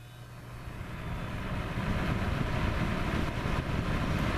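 Patton HF-50 electric fan heater switched straight to high: its fan motor and deeply pitched blades spin up, the rush of air growing louder over the first two seconds and then running steady.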